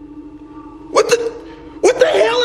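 A man's short, sharp vocal sounds, like catches of breath: a couple about a second in and another near the end. A faint steady hum sits underneath.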